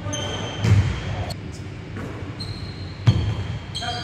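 A basketball hitting a hardwood gym floor twice, about two and a half seconds apart, with short high sneaker squeaks on the court in between, echoing in a large hall.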